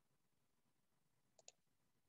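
Near silence, broken by a quick pair of faint clicks about a second and a half in, from a computer mouse.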